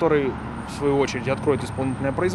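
A man speaking, with city street traffic faintly behind.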